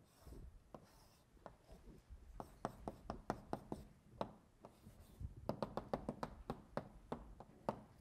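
Chalk on a blackboard: short scraping strokes and sharp taps as the board is written and drawn on, the taps coming thick and fast in the second half.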